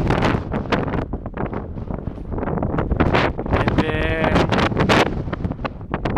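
Strong wind buffeting the microphone in uneven gusts. About four seconds in comes a short, wavering, high-pitched call.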